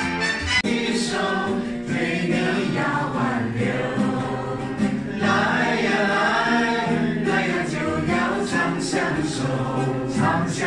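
Live singing with acoustic guitar accompaniment, several voices on the tune. The music changes abruptly about half a second in.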